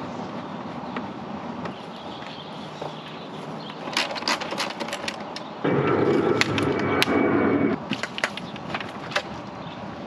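Clicks and knocks as a LiFePO4 camper battery is unhooked and lifted out of its slide-out compartment tray. A louder steady noise starts abruptly about halfway through and stops about two seconds later.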